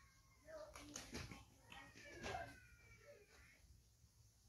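Near silence: quiet background with faint distant voices and a faint high descending call about two seconds in.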